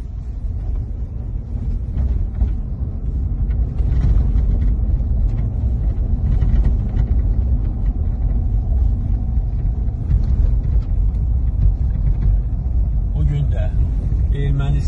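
Steady low rumble of tyre, road and engine noise inside the cabin of a moving Lexus on a rough dirt road.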